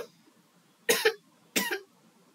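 A person coughing: two short coughs, the first about a second in and the second about half a second later.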